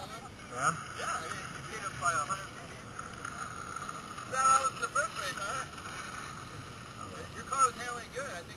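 Indistinct voices of people talking, in short scattered snatches, over a steady background hiss.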